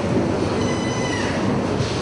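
Steady background noise of a large hall, an even hiss and rumble with no speech. A faint high squeal comes in briefly between about half a second and a second in.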